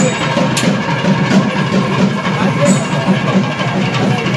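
Loud traditional temple festival music with drumming, dense and continuous, with crowd voices mixed in.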